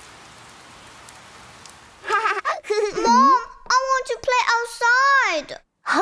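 Steady rain falling, then about two seconds in a cartoon voice with wide swoops in pitch comes in over it.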